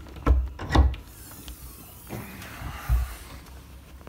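Two heavy footfalls on the teak stern steps, then the stern lazarette hatch being opened: a second or two of sliding, rubbing noise and a thud as it comes to rest near the end of the third second.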